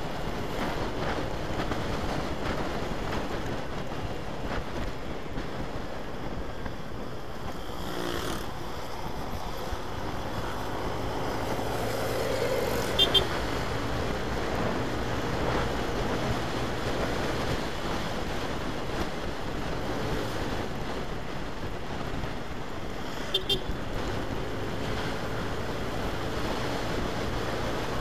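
Yamaha NMAX scooter's single-cylinder engine running at cruising speed, with wind and road noise on the bike-mounted microphone. Short double horn beeps sound about 13 seconds in, again about 23 seconds in, and right at the end.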